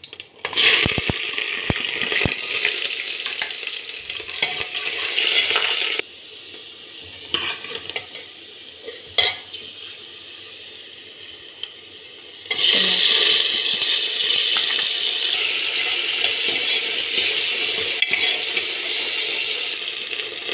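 Sliced onions and green chillies sizzling loudly as they drop into hot oil in a metal pot, with a steel ladle scraping and knocking against the pot as they are stirred. About six seconds in, the sizzle drops away suddenly to a quieter stretch with a few ladle knocks, then comes back loudly about twelve seconds in.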